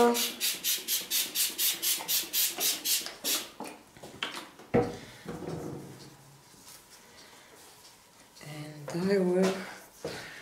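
Trigger spray bottle squirting water onto a paper towel in a quick, even run of about a dozen short sprays, roughly four a second, stopping after about three and a half seconds. A single knock follows about halfway through.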